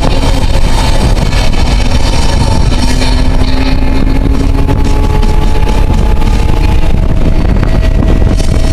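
A 2000 Toyota Solara's engine running hard on a race track, heard from inside the cabin, its note climbing slowly in pitch as the car accelerates, under a heavy low rumble of wind and road noise.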